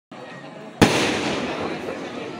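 An aerial firework shell bursts with one sharp bang about a second in, followed by a dense crackle of sparks that slowly fades.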